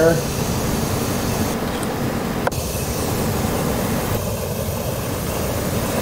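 Silicon carbide all-fuel burner firing at high output, about 720 kilowatts on a rich burn with high air input: a steady rushing noise of forced air and flame. One brief click about two and a half seconds in.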